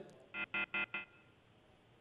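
Four quick electronic beeps over a telephone line, one right after another: the remote guest's phone connection has failed.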